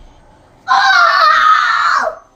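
A young child crying out loudly in a high, wavering voice, starting just under a second in and lasting about a second and a half, right after a backflip attempt ending on the floor.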